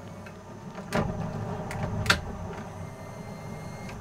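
Mercury outboard motor running steadily at low speed, with two sharp knocks about a second apart.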